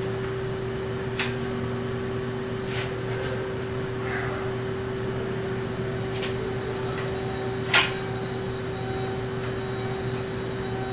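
A few light clicks and knocks as a steel-tube bicycle frame jig and a protractor are handled while the seat tube angle is set, the sharpest knock coming near the end. A steady background hum runs underneath.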